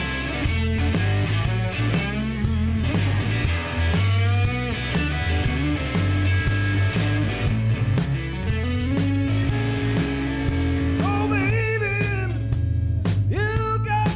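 Live blues-rock band playing: a harmonica, cupped against a microphone so it sounds amplified, wails with bent notes over electric guitar, bass and drums.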